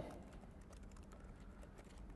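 Faint typing on a computer keyboard: scattered light key clicks.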